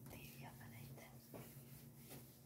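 Faint soft rubbing of a hand wiping a whiteboard, over a steady low hum.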